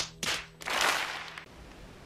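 A few sharp cracks, then a short burst of hissing noise over a faint steady hum.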